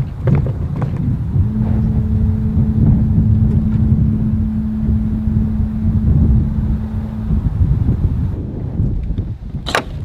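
Powered roof and door of the Rolls-Royce 103EX concept car opening: a steady electric motor hum for about six seconds, starting a second or so in, over a low rumble. A sharp click near the end.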